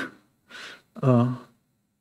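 A man's audible in-breath close to a headset microphone, then a short voiced sound of about half a second, then silence.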